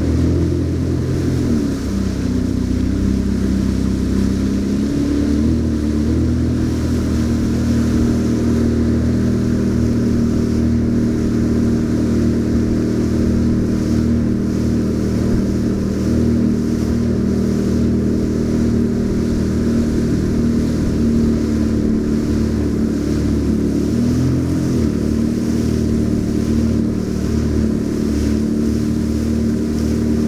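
Jet ski engine running at speed with a steady drone. Its pitch shifts about two seconds in and again a few seconds before the end, over rushing water.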